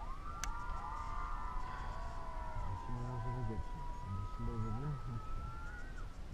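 A siren wailing, its pitch held and then slowly rising and falling over several seconds.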